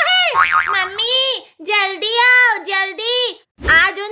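A high-pitched, sped-up cartoon character voice, sing-song and without clear words, over background music. A short thud with a low rumble comes near the end.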